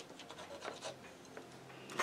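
Faint scattered scratches and taps, then near the end a wide paintbrush loaded with acrylic starts scratching across the canvas.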